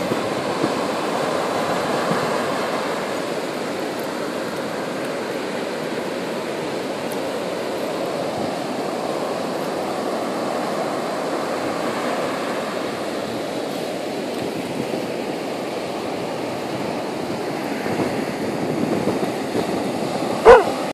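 Ocean surf breaking and washing up over the sand in a steady rush.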